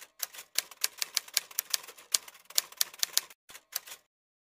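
Typewriter keystroke sound effect: a quick, uneven run of sharp key clicks, about five or six a second, with a brief pause near the end.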